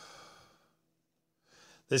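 A man breathing audibly before he speaks: one breath lasting about half a second, a pause, then a short breath, with his first word coming right at the end.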